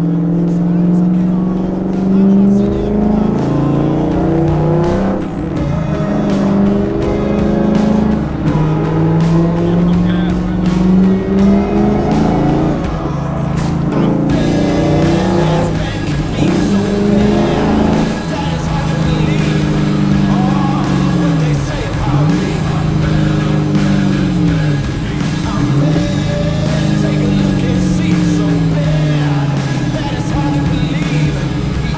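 Ford 5.0L Coyote V8 of a Factory Five Type 65 Daytona Coupe, heard loud from inside its bare cabin with no windows. It revs up through the gears, pitch climbing and dropping again at each shift, with a few quick dips and rises later on. The exhaust sounds like thunder.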